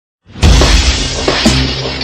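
Radio station jingle opening: a sudden crash-like hit about half a second in, its noisy tail fading slowly over steady low music.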